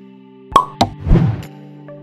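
Outro music with held tones, over which two sharp pop sound effects land about half a second apart, followed by a short whooshing hit with a low thud a little past the middle, which is the loudest moment.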